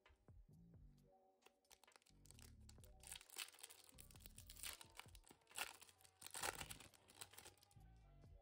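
A foil Pokémon booster pack wrapper being crinkled and torn open by hand, a run of crackles and rips with the loudest tears around the middle and latter part. Faint background music plays underneath.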